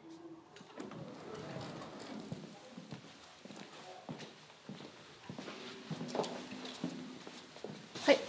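Footsteps on a hard floor: a string of irregular clicking steps.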